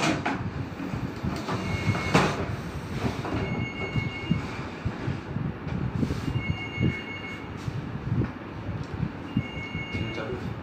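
Handling noise from hands working at a wooden balance case: rustling and light knocks, with a short high squeak about every two to three seconds.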